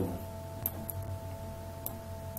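Two sharp computer-mouse clicks, the first a little over half a second in and the second near the end, over a steady low hum with faint held tones.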